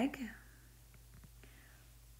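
The breathy end of a woman's spoken word, then near silence: a low steady hum with a few faint ticks.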